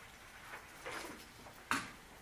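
Quiet room noise with a few faint small sounds and one sharp click about three-quarters of the way through.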